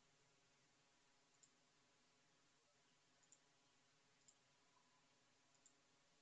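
Near silence: faint room tone with four short, faint clicks spread irregularly a second or two apart.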